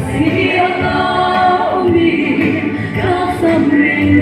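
A woman singing a gospel praise song solo into a handheld microphone, holding long sung notes, amplified through the hall's sound system.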